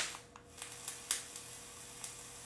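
Faint crackle and small pops of e-liquid sizzling on the hot coil of the Kanger Dripbox's dripping atomizer as it is fired, with a few louder ticks around the first second.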